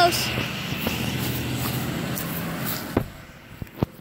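Garbage truck engine running as the truck drives by, a steady low rumble that drops away about three seconds in. A few sharp knocks follow.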